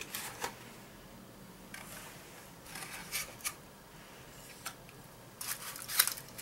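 Faint scattered clicks and rustles from a thin plastic chocolate tray being handled and set on a cutting board, with a knife picked up; a denser cluster of clicks and knocks near the end.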